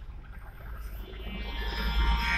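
Low steady rumble of a car driving, heard from inside the cabin, with a devotional song fading in over the second half.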